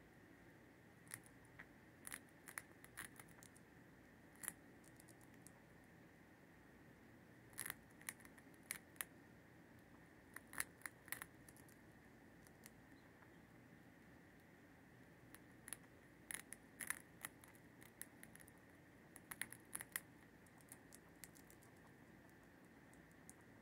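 Pet mouse nibbling a crunchy puffed treat: faint, crisp crunching clicks in short clusters a few seconds apart, over near silence.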